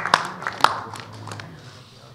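Applause from a group of people standing close by, thinning to a few scattered claps and dying away by about halfway through.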